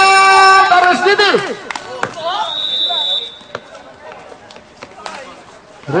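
A man's long drawn-out shout, a basketball commentator's call, ending about a second in. Then a short, steady high whistle tone lasting about a second, followed by a few sharp knocks and quieter court sounds.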